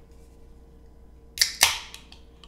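Drink can cracked open: a sharp click, then a louder snap with a short fizzing hiss.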